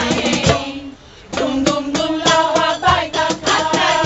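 Women's choir singing a song in Arabic over live percussion, with steady drum strokes under the voices. The music drops away briefly about a second in, then voices and drums come back together.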